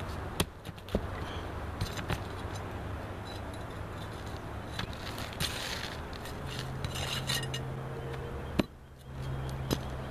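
Flat steel pry bar scraping under asphalt shingles and clicking against roofing nails as a shingle tab is pried loose. There are a handful of sharp metallic clicks, the loudest near the end, over a steady low hum.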